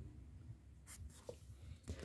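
Faint rustle of a book page being turned by hand, with a couple of soft paper ticks.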